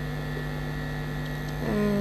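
Steady low electrical hum, unchanging, with a voice beginning just before the end.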